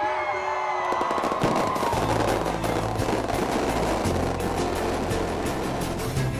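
Fireworks crackling and popping in rapid succession, starting about a second in, over music with sustained bass notes.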